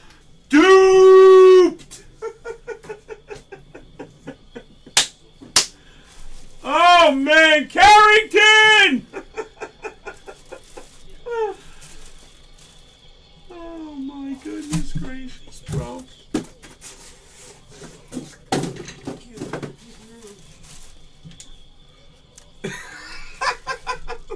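A man's wordless voice: one loud, long held call about a second in, then a run of four short rising-and-falling cries at about seven to nine seconds, with softer vocal sounds and light clicks and taps between them.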